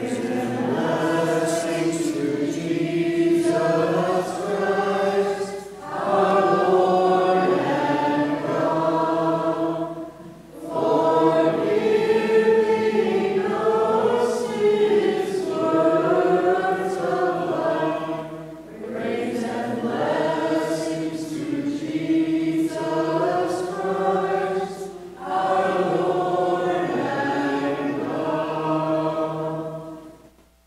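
A group of voices singing a liturgical chant in phrases of a few seconds, with short breaks between them.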